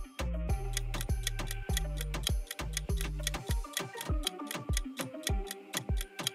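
Countdown music for a quiz timer: a steady clock-like ticking beat over a short melody and bass line. The bass drops out a little past halfway, leaving the ticks and the melody.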